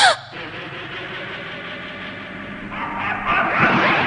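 A cartoon cat character's short, loud yelp that falls in pitch, followed by a steady noisy rush that swells louder about three seconds in.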